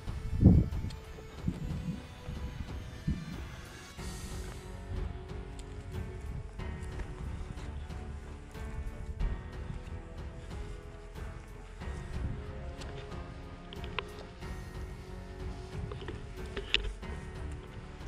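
Background music with held tones. Under it, a low thump about half a second in and soft footsteps of people walking on ploughed soil.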